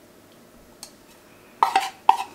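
A measuring spoon clinking against a bowl or jar a few times in quick succession about one and a half seconds in, after a single faint tick near the middle; it is the sound of spice being spooned out.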